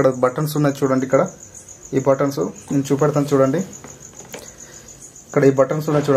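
A cricket chirping steadily in the background, a fast, even, high-pitched pulsing trill, under a man's speech that comes in short stretches with pauses between.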